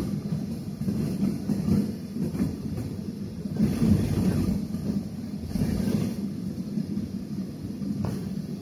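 Airliner taxiing, heard from inside the passenger cabin: a steady low rumble of jet engines and wheels rolling over the pavement, swelling and easing unevenly.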